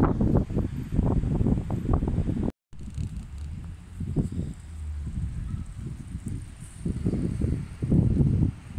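Wind rumbling and buffeting on the microphone outdoors, heavy for the first two and a half seconds, then cut off by a brief dead gap and coming back weaker and lower for the rest.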